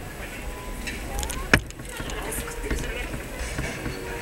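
Indistinct voices over a steady background hum, with one sharp, loud click about a second and a half in.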